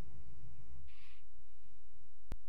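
Steady low electrical hum from the meeting room's microphone and sound system, with a brief soft hiss about a second in.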